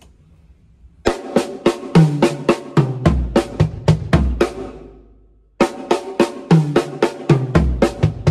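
Acoustic drum kit played with sticks: a fast pattern of snare and tom strokes, about four a second, with bass drum hits in the second half of each phrase. The phrase starts about a second in, fades out near the middle, and is played again from just past halfway.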